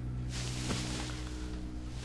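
Soft dramatic background score of sustained low notes held steady, with a faint hiss in the first second.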